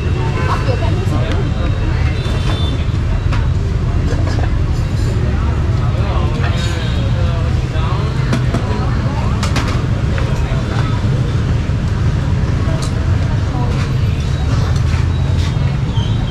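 Busy city street ambience: a steady low rumble of passing motorbike and car traffic, with people's voices talking in the background.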